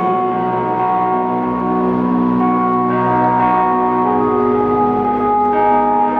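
Live synth-pop band playing in an arena: held, bell-like synthesizer chords that change pitch every second or so.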